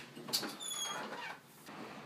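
A wooden bedroom door being pulled shut: a sharp click, then a brief high squeak and a soft rustle.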